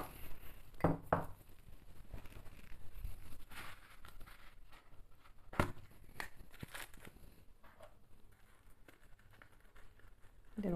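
Small kitchen containers being handled over a mixing bowl: a few sharp light clicks and knocks as a salt jar is put down and a small plastic bottle's snap cap is opened, with faint rustling between them.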